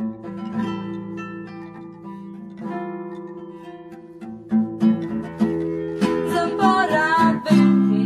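Two acoustic guitars playing an instrumental passage. At first it is single plucked notes that ring out and fade. The playing grows busier and louder about four and a half seconds in, and fuller again about six seconds in.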